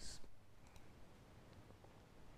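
Near silence: room tone, with a couple of faint short clicks under a second in.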